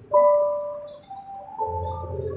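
Soft bell-like musical notes: a chord that strikes suddenly and fades over about a second, followed by a couple of further held notes over a low note.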